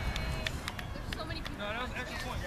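Indistinct, high-pitched voices of children and onlookers talking, clearer in the second half, over a steady low rumble.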